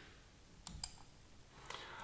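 A handful of faint, sharp computer keyboard clicks spread over about a second, over quiet room tone.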